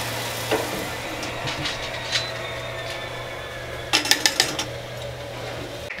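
Chicken sizzling on the grates of a Masterbuilt Gravity Series 560 charcoal smoker over a low steady hum, with a few light metal clinks from tongs and a metal sauce bowl and brush, a quick run of them about four seconds in.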